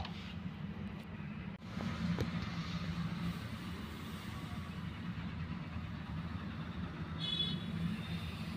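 A steady low rumble, with a short high-pitched chirp near the end.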